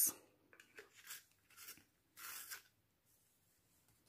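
A coloured pencil being sharpened in a two-hole handheld sharpener: a few short, faint scraping turns as the wood and lead are shaved down to a sharper point.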